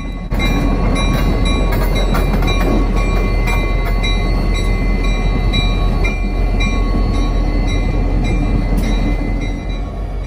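Six-axle diesel-electric locomotive running close by as it moves slowly past, its engine making a loud, steady low drone that comes up sharply just after the start.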